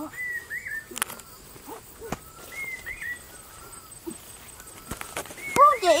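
Birds chirping: short whistled notes, several in a row, coming every second or two. A few sharp clicks, and near the end a person's voice calls out loudly.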